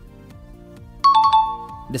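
Quiet background music, then about a second in a bright electronic chime sound effect: a quick rattle of high clicks and a two-note ding that rings for most of a second, the cue for a checkmark popping up on screen.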